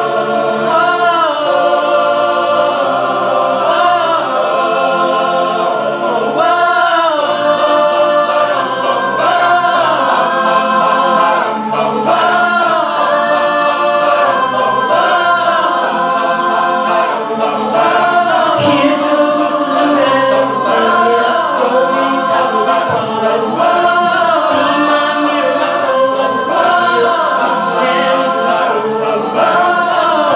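Mixed-voice a cappella group singing in close harmony with no instruments. Short, sharp clicks join in from about the middle.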